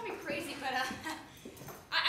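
A young man whining: several short, wavering vocal whimpers without words.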